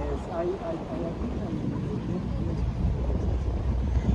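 Steady low rumble of a small boat's motor under way, with faint voices talking in the background.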